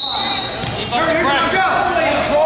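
Referee's whistle blown once, a short steady high blast of about half a second, starting the action with the bottom wrestler down on the mat; right after it, spectators and coaches shouting.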